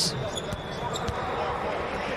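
Basketball bouncing on a hardwood court during live play: a few sharp, separate bounces in a large empty arena, with no crowd noise.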